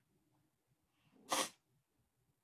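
A single short, sharp burst of breath from a woman, about a second and a half in.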